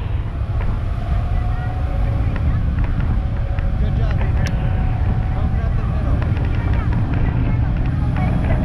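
Wind rumbling steadily on the microphone over a tow boat's engine running at speed, with wake water rushing and scattered light ticks.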